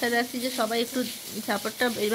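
A woman's voice speaking in short broken phrases, over a faint steady hiss.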